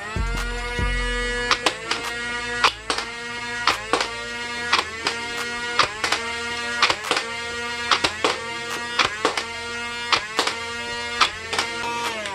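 Big Power Electric Model 503 flywheel blaster's motors spinning up with a whine and holding speed, then firing a string of foam darts. Each shot is a sharp crack with a brief dip and recovery in the motor whine.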